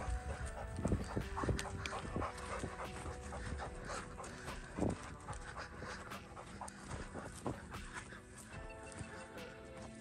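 Background music with held notes, over a dog panting close by.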